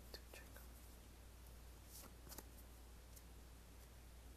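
Near silence with a low steady hum, broken by a few faint soft ticks near the start and again about two seconds in, from playing cards being handled on a playmat.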